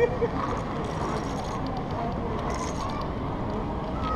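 Steady wind rush on the microphone of a helmet-mounted camera high on a building's outer wall during a rappel descent, with faint voices underneath.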